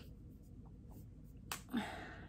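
A single sharp click as the cap is pulled off a gel-ink rollerball pen, about one and a half seconds in, followed by a short voiced breath.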